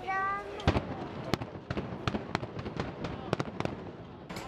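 Fireworks going off: a string of sharp bangs and crackles starting about half a second in, the strongest in the first second or so.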